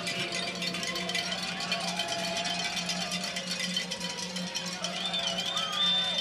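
Football stadium ambience: music and distant voices over a steady low hum, with a fast, even ticking running through it.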